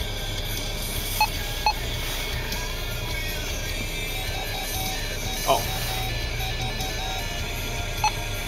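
Short electronic beeps from a handheld two-way radio: two quick blips about a second in, then a run of short beeps in the second half, over a steady low hum from inside the idling vehicle.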